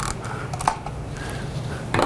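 A few light clicks of plastic Lego bricks as the large brick-built model boat is handled, over a steady low hum.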